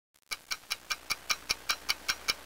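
Rapid, even ticking, about five sharp ticks a second, starting about a third of a second in.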